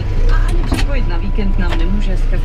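New Holland TS110 tractor's diesel engine running, heard from inside the cab as a steady low rumble, with a few light clicks and knocks.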